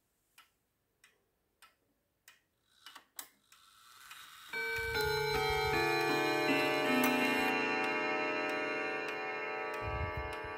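A Hermle triple-chime wall clock ticking, then about four and a half seconds in it begins a chime melody, note after note added with each one ringing on and overlapping the others.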